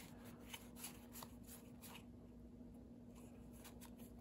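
Faint soft clicks and rustles of Magic: The Gathering trading cards being slid one behind another in the hands as a stack is leafed through, over a faint steady hum.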